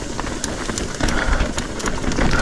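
Trek Fuel EX 7 mountain bike rolling fast over a rocky trail section: a steady rush of tyre noise over rock with many quick clicks and knocks from the bike rattling over the bumps.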